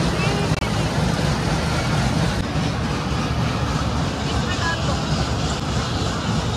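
Low, uneven wind noise on the phone's microphone as the fast-moving ride carries it high above the ground, with faint voices underneath.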